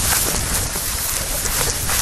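Steady rushing noise of wind across a handheld camera's microphone while skiing downhill, mixed with the hiss of skis sliding over packed snow.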